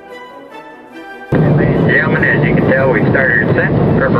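Soft orchestral music for about a second, then a sudden cut to loud steady jet cabin noise inside a McDonnell Douglas MD-83 in flight. A voice talks over the cabin PA above the noise.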